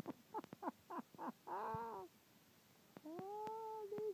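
An animal calling: a quick run of short calls, then two longer drawn-out calls, the last one rising and then held.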